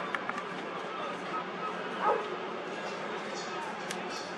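A single short animal call that falls in pitch, about two seconds in, over a steady low background hum.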